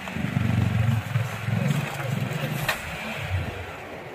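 Jawa 42 motorcycle engine running at low revs, the note swelling and easing unevenly as the bike is ridden slowly over loose stone paving. There is one sharp click about two-thirds of the way through.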